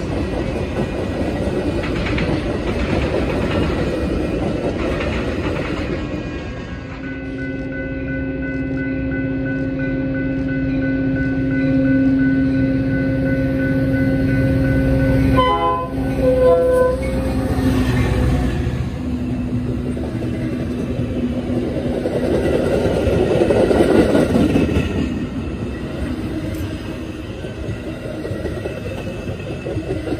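Metra bi-level commuter train passing close by, its wheels and cars rumbling and clattering on the rails. A train horn sounds one long steady note for several seconds in the middle, then a couple of short blasts.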